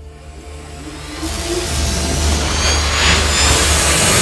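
Channel-intro logo music: a low steady drone under a swelling whoosh with rising sweeps, growing steadily louder and building toward a hit.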